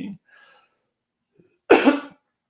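A man coughs once, a single short, sharp cough near the end.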